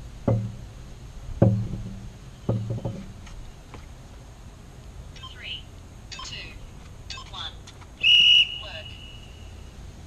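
A few heavy knocks in the first three seconds, then birds chirping, and about eight seconds in a single short, high electronic beep from a workout interval timer, signalling the start of a work interval; it dies away over about a second.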